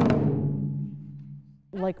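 Taiko drum struck with wooden sticks: a single deep boom at the start that rings and dies away over about a second and a half.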